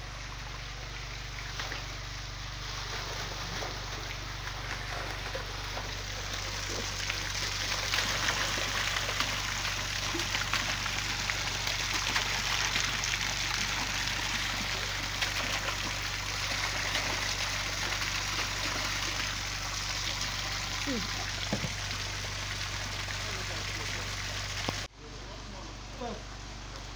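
Water jetting from a pipe and splashing into a fish pond: a steady rushing splash, loudest in the middle, over a steady low hum.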